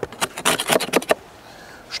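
Back of a knife scraping propolis off the wooden edge of a beehive frame: a quick run of short scrapes in the first second, then quieter.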